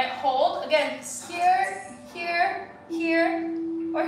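A woman talking over background music, with a steady held tone coming in about three seconds in.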